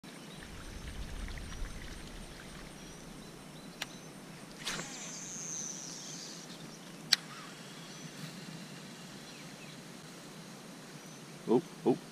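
Quiet outdoor ambience at a pond bank, with a sharp click about four seconds in, a brief high whine about five seconds in, and another sharp click about seven seconds in; a man exclaims near the end.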